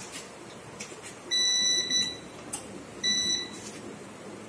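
Small desktop UPS unit beeping twice, a steady high electronic tone: a long beep of nearly a second, then a shorter one about a second later.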